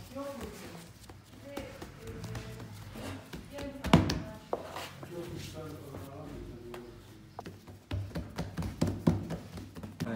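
Hands patting and pressing pide dough on a floured wooden table, soft taps with one sharp thump about four seconds in and a quick run of taps near the end. Voices and music carry on behind.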